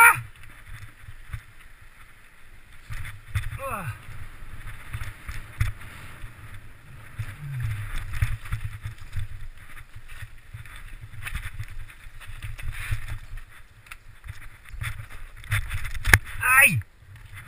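Mountain bike rattling and clattering down a rocky gravel trail, tyres crunching over stones, with wind buffeting the helmet-mounted camera's microphone. Twice, briefly, a squeal drops in pitch: once about four seconds in and once just at the end.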